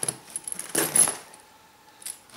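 Zipper pulls on a backpack's front pockets clicking and jingling as hands handle them, with a louder short rattle about a second in.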